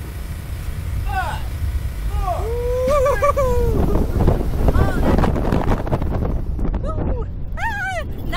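Two riders on a Slingshot reverse-bungee ride whooping and laughing as the capsule is launched, with one long wavering whoop about three seconds in. Wind rushes over the microphone from about four seconds in as the capsule flies upward.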